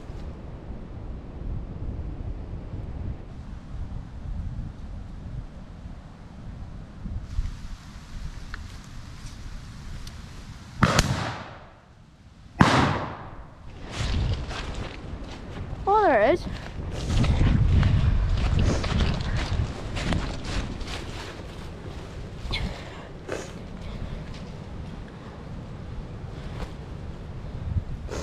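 Two shots from a side-by-side double-barrelled shotgun, about a second and a half apart, each a loud sharp crack with a short echo.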